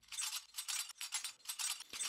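A sampled muted shaker loop playing on its own: a quick, even run of short, crisp shakes, all high hiss with no low end.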